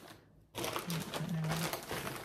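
Parcel packaging crinkling and rustling as it is handled, starting about half a second in.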